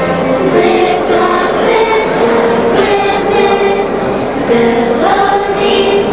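A children's choir singing together, holding notes that move from pitch to pitch every half second or so, with crisp 's' sounds on some syllables.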